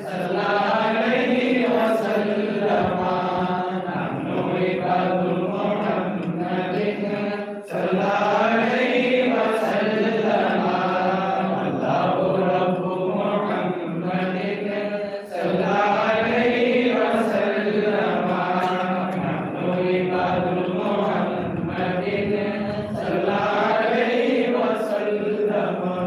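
Male devotional chanting in long melodic phrases of about seven to eight seconds each, separated by short pauses.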